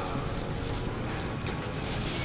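Steady low background noise of the restaurant room, with no distinct events.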